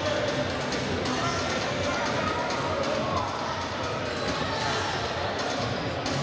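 Background music mixed with the sound of an indoor futsal game, with indistinct voices in the hall.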